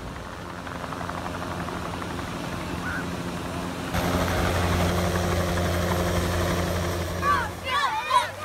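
Low-flying helicopter running steadily, a constant low hum over a hiss of surf and wind, growing louder about halfway through. Near the end it gives way to children shouting and shrieking.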